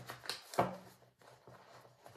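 A deck of paper cards handled and shuffled between the hands: a few soft flicks and taps, the loudest about half a second in.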